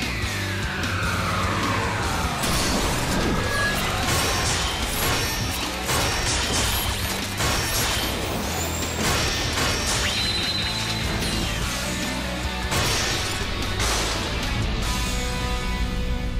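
Animated tow-truck robot's transformation sequence. Music plays over a run of mechanical clanks and impacts, opening with a long falling whine.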